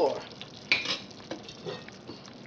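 Thick gumbo simmering in a large stainless steel pot, a soft steady bubbling hiss. A few light knocks or scrapes come through it, the loudest about two-thirds of a second in.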